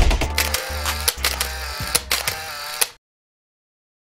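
Logo sting sound effect: a string of mechanical clicks and ratcheting, like a camera lens turning, over a held musical tone. It cuts off abruptly about three seconds in.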